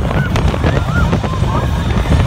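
Indoor roller coaster train running through the dark on its track, a loud, continuous low rumble and clatter. Several short, high cries, each rising and falling, sound over it.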